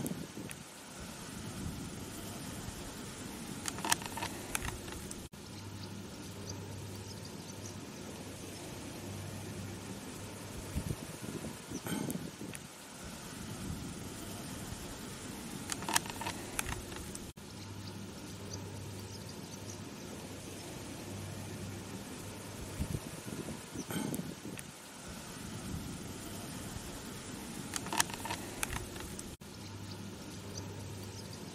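A hedgehog rustling and chewing in grass: soft clicks and crackles come every few seconds over a steady outdoor hiss and a low hum. The same stretch of sound repeats about every twelve seconds.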